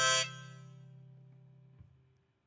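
The song's final chord: a harmonica note swells and cuts off a quarter second in, leaving an archtop guitar chord ringing and slowly fading away. A soft knock near the end, as the strings die out.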